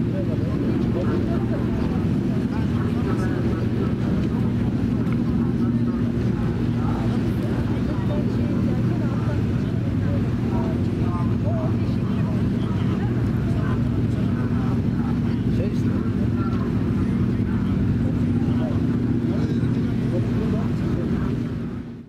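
Steady low drone of a boat's engine heard on board, with background voices chattering; it fades out near the end.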